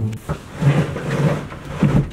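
Wooden desk being shoved and dragged across the floor: low scraping rumbles with a few knocks, loudest near the middle and again near the end.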